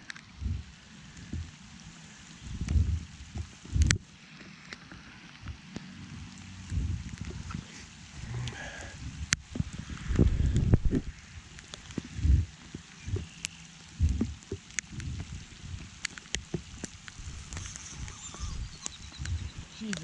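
Light rain falling on the pond and around the microphone: a steady hiss broken by scattered sharp ticks, with irregular low bumps throughout.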